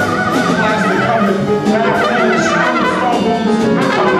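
Live jazz quintet playing: a horn plays a fast, wavering line over plucked upright bass and drums with cymbals.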